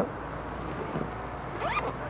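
Rustling and handling of a bag as a man rummages in a scooter's under-seat storage compartment for his helmet. A single short spoken word comes near the end.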